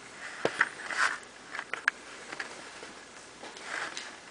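A cat lapping water from a glass fish bowl: a run of small, irregular clicks.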